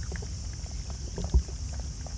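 Light scattered ticks and scuffs of raccoon dog cubs' paws and claws on asphalt, over a steady low rumble. A single low thump just past the middle is the loudest sound.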